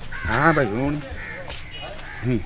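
A man's voice in one drawn-out, wavering wail without words, lasting under a second, its pitch sagging and then rising again: a show of weeping.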